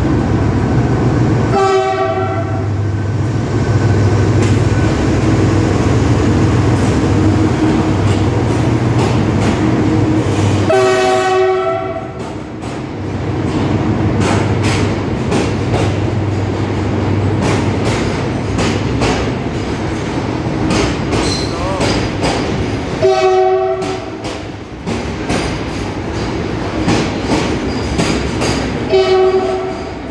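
A WDG4G diesel-electric freight locomotive runs past with a steady low engine hum and sounds its horn in four short blasts, about 2, 11, 23 and 29 seconds in. From the middle on, its covered goods wagons roll by with the wheels clicking rhythmically over the rail joints.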